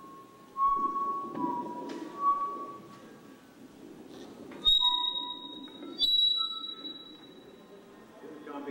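Public-address system feedback: thin whistling tones that hold and step in pitch, then two sharp pops, each followed by a higher whine, as equipment is plugged in.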